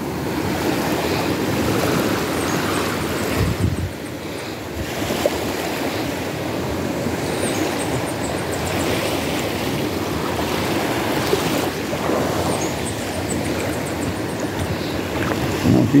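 Small waves washing onto a sandy, stony shore in a steady rush of surf, with a brief low thump about three and a half seconds in.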